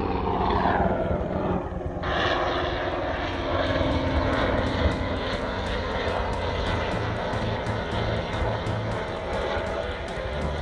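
Helicopter in flight overhead: a steady rotor and engine drone with a fast, regular chop from the blades, starting abruptly about two seconds in.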